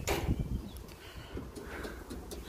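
A sharp knock at the start, then rustling and handling noise close to the microphone as a jacket sleeve brushes past it.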